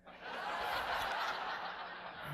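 Audience laughing together, swelling quickly after the punchline and then tailing off.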